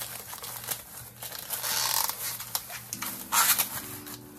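Thin plastic produce bag crinkling as a banana is handled and pulled free of it, with two louder bursts of rustling, about halfway through and near the end.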